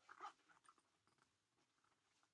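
Near silence: classroom room tone, with one faint short sound about a quarter second in.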